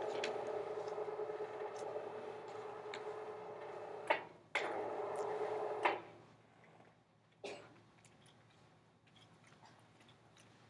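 Motorized projection screen lowering: a steady motor hum that stops with a click about four seconds in, starts again half a second later, and stops for good about six seconds in.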